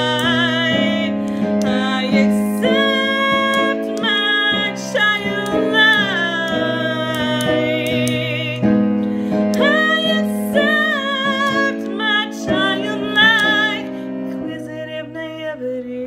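A woman singing a slow song with vibrato over sustained keyboard chords that change about every two seconds; the voice grows softer near the end.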